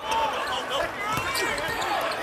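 A basketball dribbled on a hardwood court, a few sharp bounces over steady arena crowd noise.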